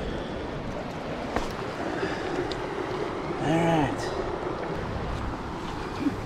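Steady rush of a shallow, clear stream running over rocks. About three and a half seconds in, a short vocal sound from a person rises and falls, and a few light clicks are heard.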